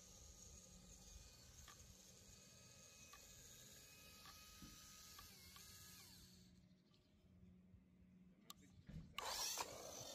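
Near silence, with a faint electric whine that shifts in pitch, from the small RC truck's 370 brushed motor running in second gear at a distance, and a few soft ticks.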